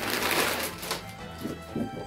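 Clear plastic packaging bag crinkling as a garment is pulled out of it. About a second in, the crinkling gives way to background music with steady held notes.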